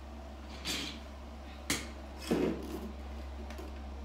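Handling sounds as the picosecond laser handpiece and its hose are taken up: a rustle, a sharp click and a short knock with rustling, one after another, over the steady low hum of the laser unit's cooling fans.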